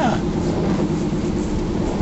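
Steady rumble and hiss of a car driving, heard from inside the cabin.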